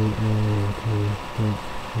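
A man's voice chanting the same few words over and over on one low, flat pitch, in short held syllables.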